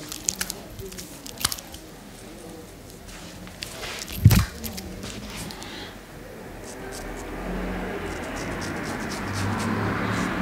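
Shaving lather squishing as it is worked between the hands and onto the beard, with a sharp click about four seconds in. From about six seconds in, a straight razor scrapes through the lathered beard stubble, growing louder.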